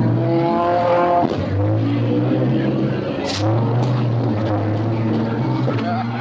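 A beater race car's engine running hard under throttle, heard from inside the cabin. Its steady pitch drops out briefly twice as the throttle is lifted and reapplied. There is a sharp knock about three seconds in.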